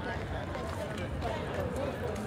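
Many people talking at once, indistinct chatter of a crowd, with footsteps on pavement.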